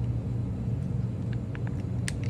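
A steady low hum, with a few faint crinkles in the second second as a plastic soy-sauce sachet is handled and squeezed.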